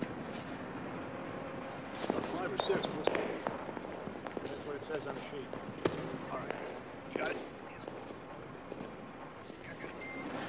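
Faint, indistinct voices in the background with a few scattered knocks and thumps.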